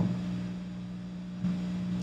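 Room tone in a pause between speakers: a steady low hum made of a few held low tones.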